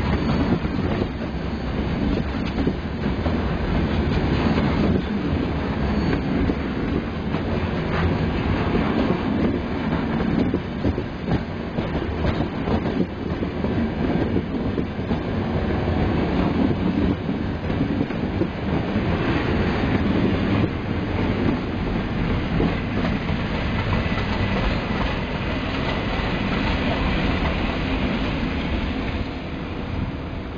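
Train running through station tracks, its wheels clattering steadily over rail joints and points, with a faint high wheel squeal in the second half.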